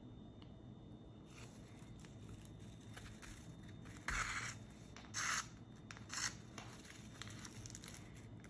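Hand-stitching a pine needle coil: a few short, faint, dry rustling scrapes from the bundle of pine needles and the needle and thread being worked through the coil, the clearest about four, five and six seconds in.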